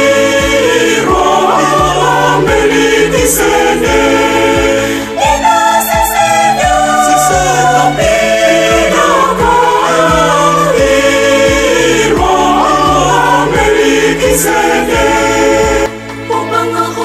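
A church choir sings a hymn in parts over a steady bass line and a regular beat.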